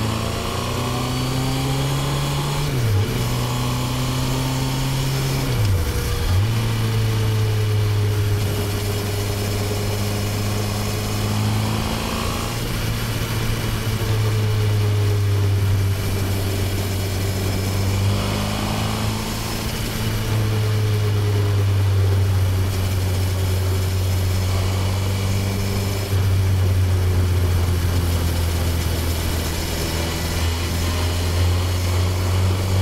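Honda CB1000R's inline-four engine, close-miked on the bike while riding: it pulls away through the gears, the pitch climbing and dropping at quick upshifts about three and six seconds in. It then cruises at a fairly steady engine speed that rises and eases slightly.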